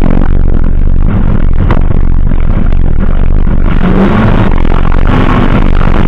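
Two-wheel-drive safari race car running hard, heard from an onboard camera inside the car: a loud, distorted engine note with rattling and clatter from the car on rough dirt.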